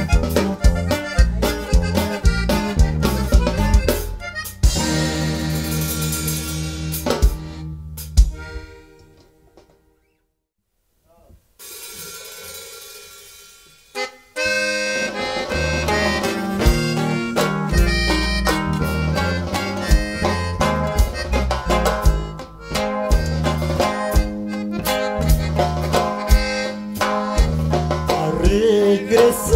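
Norteño band music led by an accordion, with bajo sexto, bass and drums. A few seconds in, the accordion holds long sustained notes that fade into a brief near-silent pause around the middle, and the full band comes back in with a steady beat for the second half.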